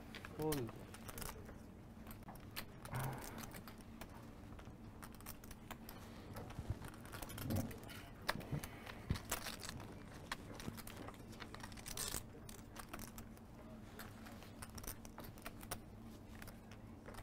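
Poker chips clicking as a stack is handled and shuffled at the table: many small, sharp clicks scattered throughout, with faint murmured voices now and then.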